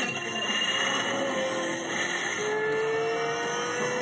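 Sound effects of an animated racing video, played through a TV speaker: a steady rushing whoosh with a few held tones, and a vehicle-like whine that rises slowly in pitch from about halfway through.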